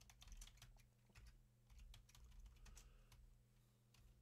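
Faint computer keyboard typing: a run of quick, light key clicks as a command is entered.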